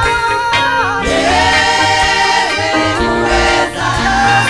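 Gospel worship song: a group of voices singing together over instrumental backing with a steady bass line, a strong sung line entering about a second in.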